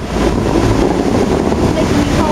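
Steady, loud rushing of a large musical fountain's water jets spraying high and falling back onto the lake, with crowd voices underneath.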